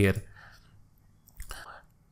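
A man's voice ends a word, then near silence with a brief soft intake of breath about one and a half seconds in.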